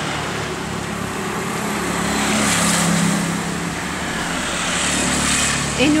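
A motor vehicle engine running steadily under a broad rushing noise that swells around the middle and again near the end; its pitch dips slightly a little over two seconds in.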